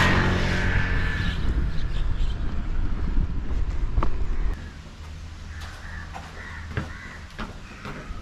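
A motor vehicle passing close by on the road, loudest at the very start and fading over the first couple of seconds into a low traffic rumble that drops away suddenly about four and a half seconds in. In the quieter stretch that follows, crows caw a few times.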